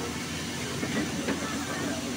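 Steady hiss with a low hum underneath and indistinct voices murmuring in the background.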